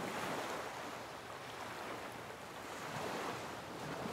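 Ocean surf breaking on a beach: a steady rushing wash that swells near the start and again about three seconds in.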